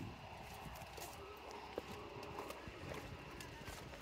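Quiet footsteps on bare rock, a light step every half second or so, over a faint low rumble.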